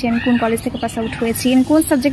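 Speech only: a young woman talking steadily in Bengali.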